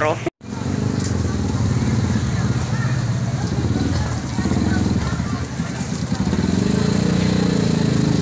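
A small motorcycle engine idling steadily, getting louder near the end, with the voices of a waiting crowd beneath it. The audio drops out for a split second just after the start.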